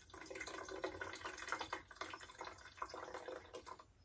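White vinegar poured from a bottle into the clear plastic water tank of a steam generator iron, trickling and splashing into the water already in the tank.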